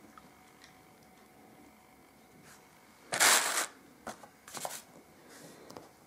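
Rustling of packaging being handled: one short loud rustle about three seconds in, then a few smaller rustles.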